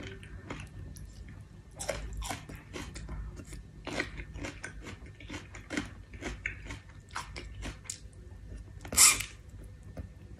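Close-up eating sounds: a person chewing and biting on chicken feet, with many short wet mouth clicks and smacks. One louder, longer burst of mouth noise comes about nine seconds in.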